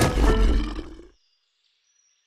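A loud, deep rumbling sound effect with strong bass that fades out about a second in, leaving silence.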